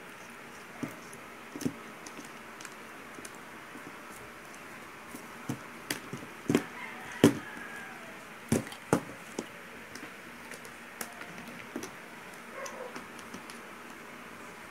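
Scattered clicks and light knocks of hands working wires and a plastic washing-machine wash timer on a workbench, coming thickest in the middle, over a steady low hiss.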